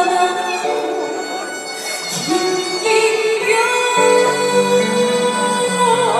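A woman singing a trot song live over instrumental accompaniment, with long held notes.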